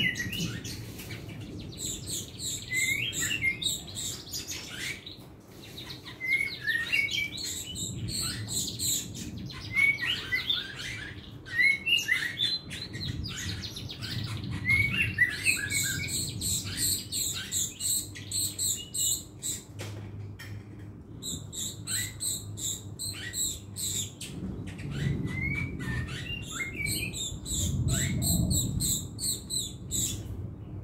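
Caged chestnut-tailed starling (jalak rio-rio) singing a busy, chattering song of quick chirps, whistles and rattles, delivered in short bursts one after another. It is the song style that keepers call 'tarikan setengah kopling'.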